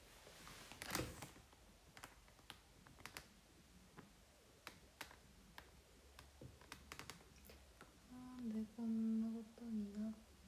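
Light, irregular clicks and taps, about a dozen over eight seconds, the sharpest about a second in. Near the end, a woman hums a tune.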